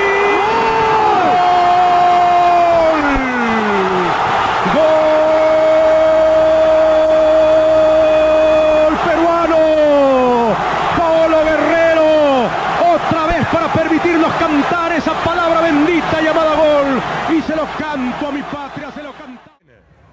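A football commentator's drawn-out goal cry, each held on one high note for several seconds and then sliding down in pitch, twice. It then breaks into shorter excited shouts and fades out near the end.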